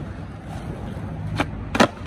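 Skateboard rolling on asphalt, its wheels giving a steady low rumble, then two sharp clacks of the board hitting the ground about a second and a half in, the second louder.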